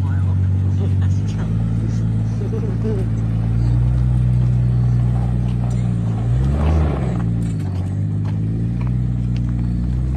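Vehicle engine running steadily, its pitch dipping and then climbing back about seven seconds in.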